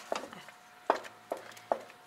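Wooden spoon stirring semolina halva in a stainless steel pot, knocking against the pot about four times at uneven intervals.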